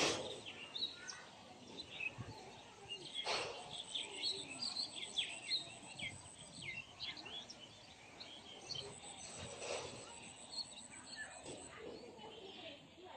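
Small birds chirping busily, many short calls, some falling in pitch, overlapping through the whole stretch. Three brief rushing noises stand out: the loudest at the start, another about three seconds in and one near ten seconds.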